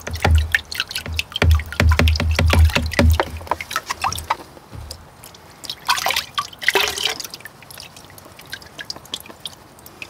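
A plastic gold pan of black sand concentrates is shaken in a tub of water, settling the heavy material to the bottom, with rapid sloshing, splashing and dull thumps for the first three seconds or so. About six seconds in comes a louder rush of water pouring off as the pan is tipped up, then lighter drips and trickles.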